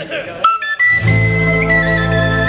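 A song intro starting about half a second in: a sudden first note, then a held low drone under a high, steady melody line.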